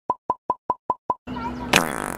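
Edited-in sound effect: six quick, identical short pops, about five a second, set in dead silence. After they stop, outdoor background sound and a voice come in near the end.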